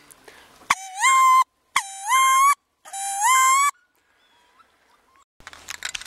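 Three loud, squealing wood duck calls in quick succession, each under a second long, every one rising in pitch and then holding.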